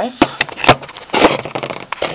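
Handling noise on a wooden workbench: about four sharp knocks with a short rustle between them, as of a camera being set down and objects being moved.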